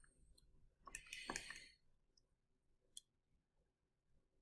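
Near silence with a few faint clicks, plus a short faint rustle about a second in and a single click about three seconds in.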